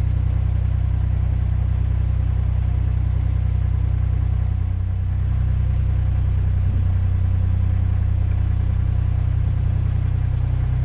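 A narrowboat's inboard diesel engine running steadily while the boat cruises, a low, even drone with a slight shift in its note about halfway through.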